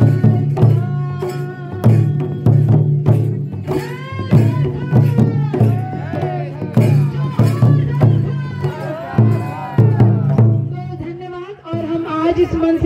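Oraon tribal folk song: a stick-beaten barrel drum plays a steady beat, with singing over it from about a third of the way in. The drumming fades out near the end.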